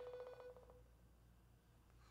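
FaceTime outgoing call tone from a phone's speaker: a pulsing held tone that ends under a second in, then near silence while the call rings out.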